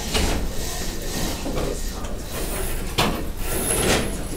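Window blinds being lowered: a continuous sliding, mechanical noise with sharper clicks near the start and again about three seconds in.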